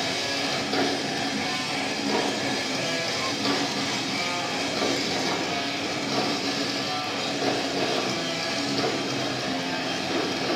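Live heavy metal band playing at concert volume: distorted electric guitars and drums, with a strong accent about every second and a half.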